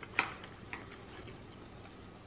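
Wooden chopsticks clicking against a takeaway sushi box as they are handled and set down: one sharp click just after the start and a softer one about half a second later.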